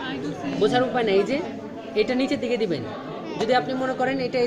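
Several people talking over one another in a room.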